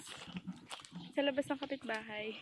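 A person's voice in short pitched sounds in the second half, after a quieter first second.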